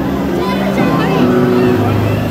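Live band on stage holding soft, sustained chords, with a few voices over the top.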